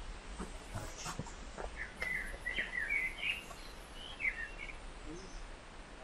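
A songbird singing a short run of quick chirping notes outdoors, with a few light knocks in the first second or so.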